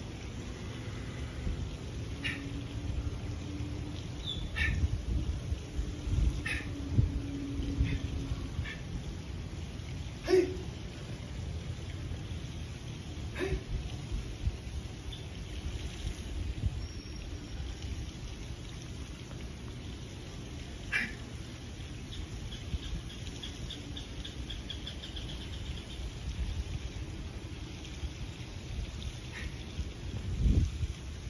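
Steady low wind rumble on the microphone, broken by about a dozen scattered short sharp sounds of a person moving through a karate kata: stepping, stamping and turning on a hard tiled floor.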